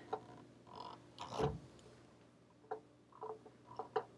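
Faint handling sounds of a cordless iron being worked over a felt pressing mat: one soft knock, then a few light clicks and taps near the end.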